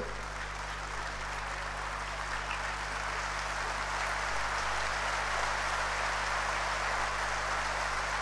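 Audience applauding steadily, growing slightly louder over the first few seconds.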